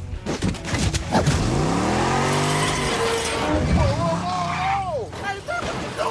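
Ford F-250 pickup truck engine revving up and dropping back during a crash, with tyres skidding and metal crunching. A long wavering squeal follows after about four seconds.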